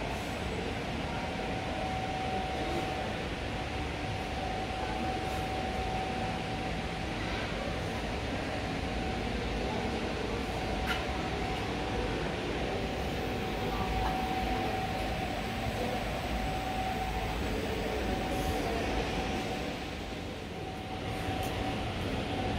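Steady rumbling room noise with a constant mid-pitched hum, and a few faint clicks.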